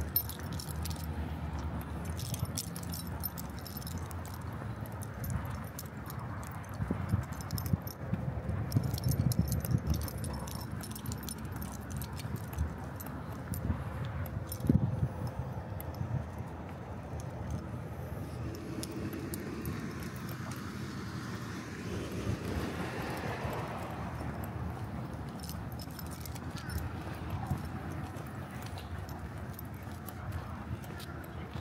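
Light metallic jingling and clinking from a walking dog's leash hardware, coming and going, over a low background rumble.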